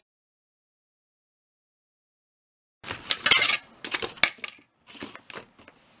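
Dead silence for nearly three seconds, then a run of crackly rustles and sharp clicks from double-sided tape and card being handled and pressed down on a cutting mat.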